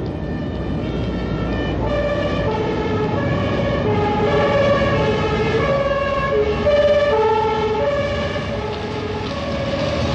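Two-tone police siren alternating steadily between a low and a high note, over passing traffic.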